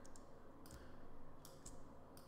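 A few faint, short clicks from a computer mouse and keyboard keys, spread out over a quiet room hum.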